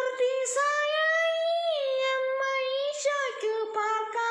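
A boy singing a Malayalam Marian devotional song solo, without accompaniment. He holds long notes that slide down from one to the next.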